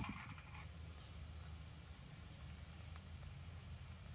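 Very quiet background: only a faint, steady low hum.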